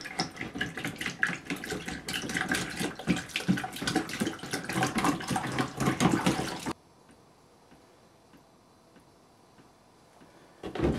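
Water splashing and sloshing as a hand scrubs out a paint jar in a basin of water. It cuts off suddenly about seven seconds in, leaving only a faint hum.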